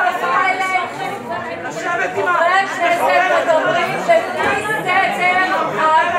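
Overlapping speech: several voices talking over one another at once, with no single speaker clear.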